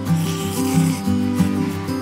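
Acoustic guitar background music playing a melody, with a brief rasping noise over the first second.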